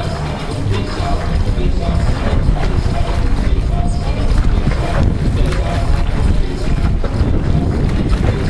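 Pool water lapping and splashing right at the microphone, a steady rough wash of noise, while a swimmer swims front crawl toward it.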